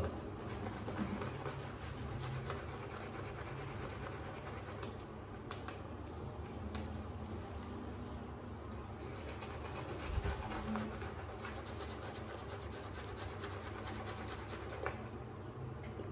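A 28 mm Zebra synthetic shaving brush working lather onto the face: a soft, steady brushing with faint fine crackles from the lather.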